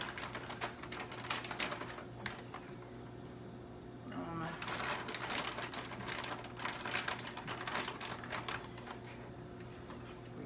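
Butter and garlic frying in a hot pan, crackling and spitting quickly as raw shrimp are added. The crackling eases for a moment near the middle, then picks up again.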